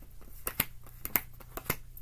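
Tarot cards being handled and laid down on a cloth-covered table, making several sharp card snaps and taps, the loudest about half a second, one second and a second and a half in.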